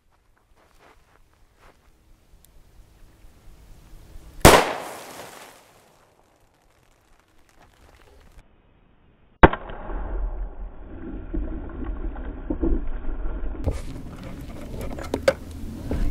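A single 9mm pistol shot from a Smith & Wesson M&P Pro CORE firing a 50-grain Liberty Civil Defense lead-free hollow point, a sharp crack about four seconds in that rings out for about a second. A second sharp crack comes about halfway through, followed by several seconds of muffled rumbling noise.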